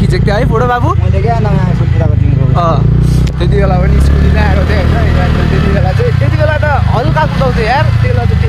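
Steady low rumble of a motorcycle ride with wind on the microphone, and people's voices talking over it.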